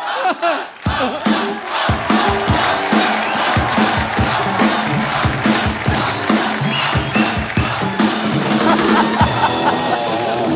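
Cheerleading routine: loud shouted cheers over drum-heavy music with a driving beat, starting about a second in after a brief lull.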